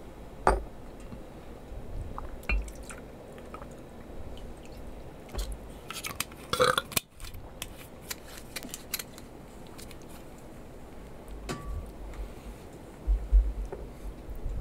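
Tabletop handling sounds of a glass liquor bottle and a small cup: scattered light clicks and knocks, with a short pour of liquor into the cup about six to seven seconds in that stops abruptly.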